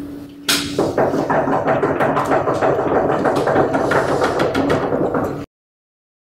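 An audience knocking their knuckles on the desks in place of applause: a dense, loud run of many quick knocks that starts about half a second in and cuts off suddenly near the end.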